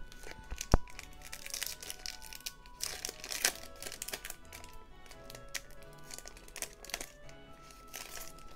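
Foil Pokémon booster pack wrapper crinkling and tearing as it is opened, over background music. A single sharp click just under a second in is the loudest sound.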